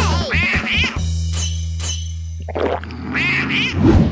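Edited-in comedy background music: a held low bass note with short squeaky sound effects that rise and fall in pitch, in two groups about three seconds apart, and a louder swish at the end.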